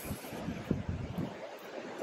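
Wind rumbling on the microphone in irregular gusts, over a steady wash of sea surf.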